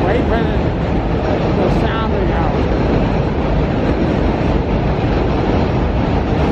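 Loud, steady rumble of a passing train, loud enough to drown out conversation, with faint voices under it.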